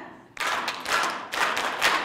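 Several people clapping their hands together, a few uneven claps starting about half a second in.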